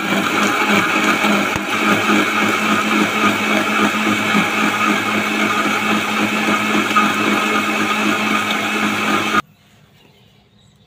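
Electric countertop blender running steadily at full speed, grinding chopped onion and tomato with liquid into a smooth drink, with a constant motor hum under the whir. It cuts off suddenly near the end.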